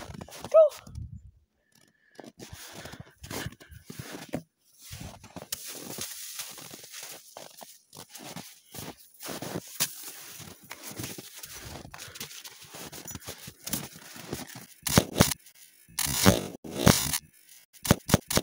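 Irregular crunching and scraping in packed snow as a dog plays with latex balloons, with louder scuffing bursts near the end.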